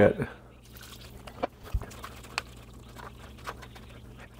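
Chicken broth poured over dry freeze-dried shredded chicken in a pot, then the chicken stirred with a spatula. The dry pieces give a soft crackling and crunching with scattered small clicks, and there is one low bump just under two seconds in.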